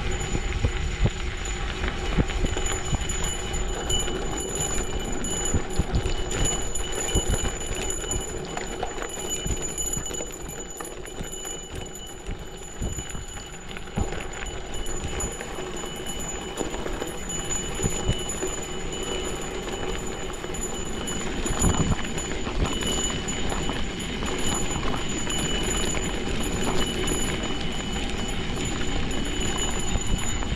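Gravel bike riding over a rough gravel forest road: the 40 mm gravel tyres crunch over loose stones and the bike rattles with a dense, irregular run of clicks and knocks.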